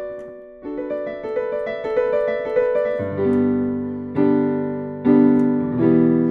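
Digital piano playing a short run of single notes stepping upward, then lower, fuller chords struck about once a second from roughly three seconds in.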